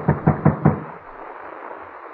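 Rapid knocking on a door, a radio sound effect: a quick run of about five even knocks in the first second.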